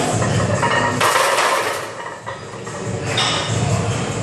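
A plate-loaded barbell clanking into the steel hooks of a power rack about a second in, with the metal ringing briefly as the plates settle.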